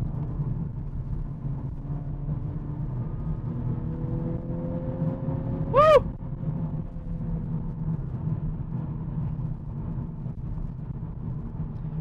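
Honda Civic Type R's 2-litre turbocharged four-cylinder pulling on the road, with a steady low rumble of engine and road noise and a faint note climbing in pitch over a few seconds. A brief high, arched sound, rising and then falling, cuts in about six seconds in.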